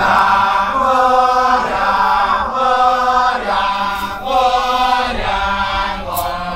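Kecak chorus of men chanting together, singing a series of held notes that each last about a second.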